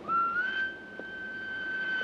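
A single long whistled note that slides up slightly as it begins, then holds steady at one high pitch.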